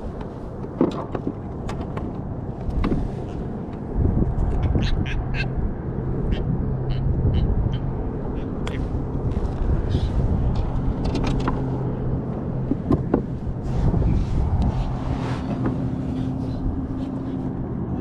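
A hooked catfish croaking now and then as it is handled, a sound likened to laughing, over steady wind on the microphone and a low, steady engine hum.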